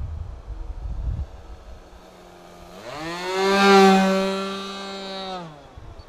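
Small propeller plane's engine buzzing overhead: it comes in about three seconds in, rising in pitch and loudness, holds a steady high note that is loudest around the four-second mark, then drops away abruptly near the end. Wind buffets the microphone in the first second.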